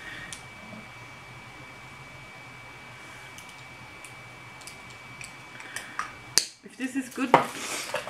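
Light clicks and clinks of small makeup items and packaging being handled on a table, over a faint steady hiss with a thin high whine. Near the end come a louder run of sharp clinks and knocks.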